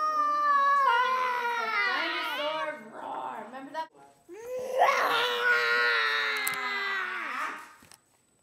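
A young child's voice in two drawn-out, high-pitched cries, each about three seconds long, with a short gap between them.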